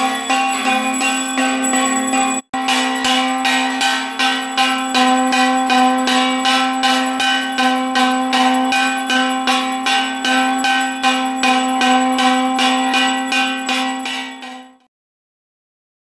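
A temple bell rung rapidly and continuously, about three strikes a second, each strike ringing into the next, with a brief break about two and a half seconds in. It fades out and stops near the end.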